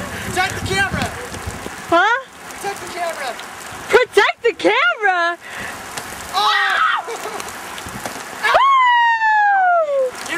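Teenagers shouting and calling out during a game, with wind noise on the microphone. Near the end one long, loud shout falls in pitch.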